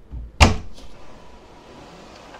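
Hotel-room connecting door opened by its lever handle: one sharp latch click about half a second in, then the door swinging open quietly.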